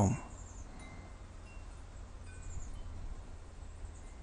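Faint chiming tones, now and then and at different pitches, over a low steady hum.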